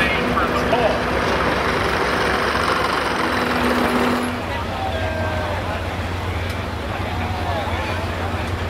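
Heavy diesel semi truck engine running at the end of a sled pull, with voices in the background. About four seconds in the sound drops to a quieter, steady low rumble.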